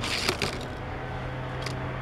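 A short scraping rustle in the first half second as a hand moves a die-cast toy car on plastic track, then only a low steady hum.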